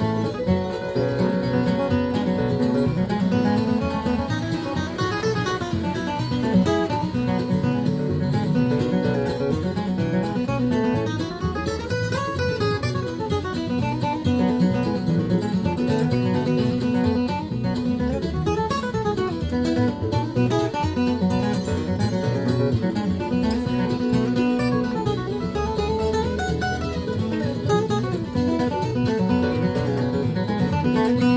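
Steel-string acoustic guitar flatpicked solo, playing a bluegrass tune in quick single-note runs that climb and fall over ringing bass notes.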